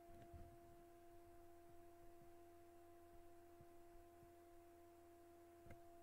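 Near silence: a faint steady electrical hum on the recording, with a few faint clicks.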